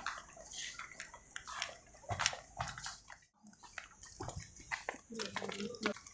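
Footsteps, rustling and handling noise of a group walking, with faint, indistinct chatter that grows clearer near the end. The sound drops out briefly a little past three seconds.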